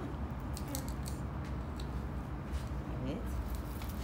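Faint scattered clicks and light rustles of small white decorative pebbles being handled and dropped around a potted succulent, over a steady low hum in the room.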